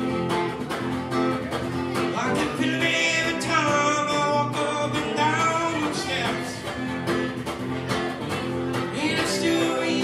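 Steel-string acoustic guitar strummed steadily in a live solo performance, with a man's singing voice over it for part of the time.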